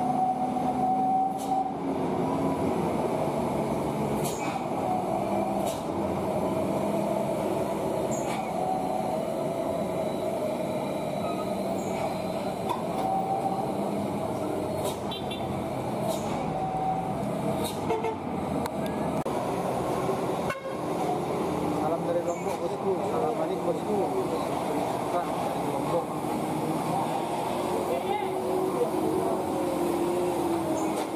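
Heavy diesel dump trucks running through a tight hairpin bend, their engines a steady dense rumble, with short horn toots now and then and people's voices over the traffic.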